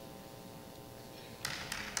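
A quiet stretch with a faint steady hum, then audience applause breaking out about one and a half seconds in.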